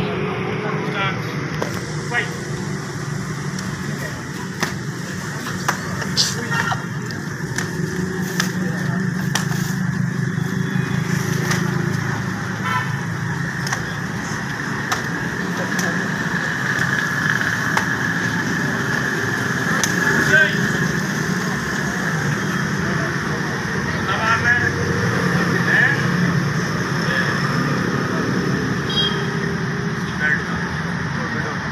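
Steady outdoor urban background noise with indistinct voices, broken now and then by short sharp knocks.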